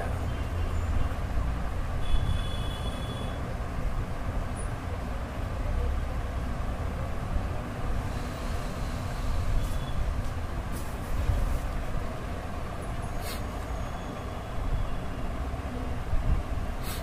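Steady low rumbling background noise with a few faint clicks in the second half.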